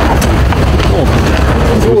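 Steady low rumble on a handheld microphone jostled in a crowd, with people talking faintly behind it.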